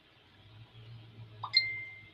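A short ding about a second and a half in: a single clear tone lasting about half a second, over a faint low hum.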